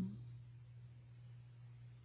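Quiet room tone in a pause between words: a steady low electrical hum with a faint high hiss, as a man's last word fades out at the very start.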